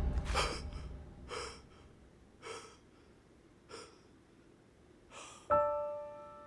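A man breathing hard in heavy gasps, about one a second, growing fainter. About five and a half seconds in, soft piano notes of the score begin.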